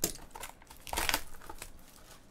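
Crinkling and rustling of the wrapper and cardboard sleeve of a trading-card box as it is pulled off by hand, loudest about a second in.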